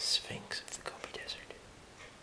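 A man whispering a few breathy words for about a second and a half.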